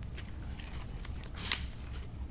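Light, crisp clicks and rustles of paper cocktail umbrellas with wooden sticks being drawn out of a cardboard advent calendar pocket, with one sharper click about a second and a half in.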